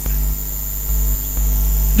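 Steady electrical mains hum from the PA sound system, low and swelling and dropping in steps, with a thin steady high whine above it.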